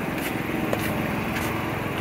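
Steady hum of a running engine over street noise.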